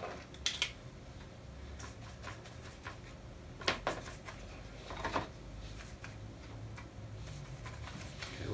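Faint handling noises of a paintbrush and plastic paint cups on a tray as paint is mixed and thinned with water: a few scattered light clicks and taps over a low steady hum.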